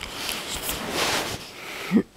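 A long, loud breath close to the microphone, swelling and fading over about two seconds, ending in a short voiced sound that rises in pitch.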